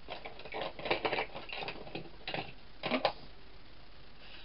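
Paper and card pieces handled on a craft desk: several short bursts of rustling and clicking, the loudest about a second in and again near three seconds.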